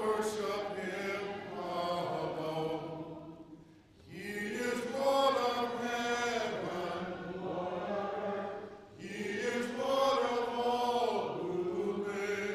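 A man's voice chanting through a microphone in long held phrases of three to four seconds each, with short breaths between them.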